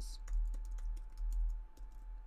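Computer keyboard typing: a quick, uneven run of key clicks as a word is typed, over a steady low hum.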